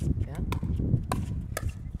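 Pickleball paddles striking a plastic ball in a quick exchange at the net: three sharp pops about 0.6 seconds apart.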